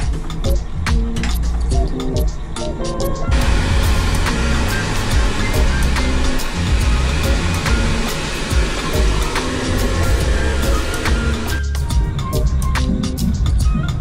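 Background music with a steady beat. From about three seconds in, a train-toilet hand dryer blows a steady rush of air over it, which cuts off suddenly near twelve seconds.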